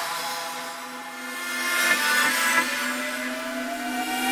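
Experimental dubstep track in a breakdown: the deep bass drops out, leaving sustained synth tones over a gritty, noisy texture. A rising pitch sweep begins a little past halfway through.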